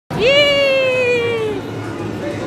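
A young child's voice giving one long, high cry: it rises sharply at the start, then slides slowly down in pitch and fades out about a second and a half in, over a steady background hubbub.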